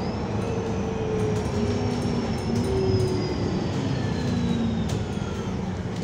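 Inside a KMB Alexander Dennis Enviro500 MMC double-decker bus moving on the road: steady engine and road rumble, with a thin whine that slowly falls in pitch.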